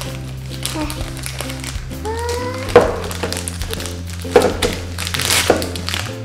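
Plastic ice-lolly wrapper crinkling and tearing as it is pulled open, with three sharp crackles: the loudest about three seconds in, then two more towards the end. Background music plays throughout.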